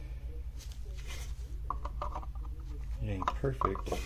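Faint scraping and light knocks as a lithium-ion cell pack is handled and fitted back into its plastic M18 battery case, over a steady low hum; a voice speaks near the end.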